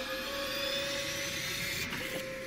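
A suspense sound effect: a steady hum under several faint high tones that slowly rise in pitch, building tension before a vote is revealed.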